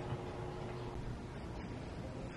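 Quiet room tone: a low, steady background hiss and hum with no distinct sound.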